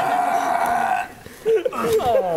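A person's long, drawn-out vocal cry, held at one steady pitch and breaking off about a second in, over other voices talking and laughing; a few short vocal sounds follow near the end.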